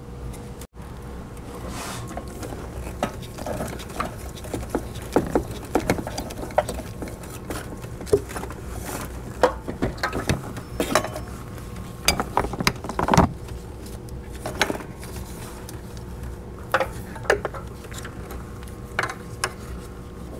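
Irregular metal clinks and knocks of an oxygen-sensor socket on a long half-inch extension and ratchet, working the front oxygen sensor loose, over a faint steady hum.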